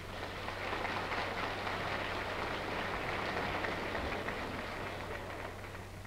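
Crowd applauding, swelling during the first second and tapering off near the end.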